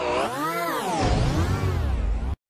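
Logo jingle music, its pitch wavering up and down in slow waves, with a deep bass coming in about halfway through.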